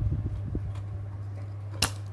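Soldering iron being worked against a TV circuit board while a solder joint is melted off a CRT socket pin. Faint handling sounds run over a steady low hum, with one sharp click near the end.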